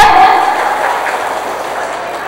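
Audience applauding, the clapping dying down gradually.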